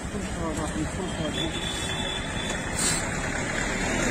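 Busy street traffic with motor vehicles running and indistinct voices in the crowd, with a brief high hiss near three seconds in.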